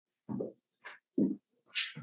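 A few short spoken syllables with pauses between them, the start of a question.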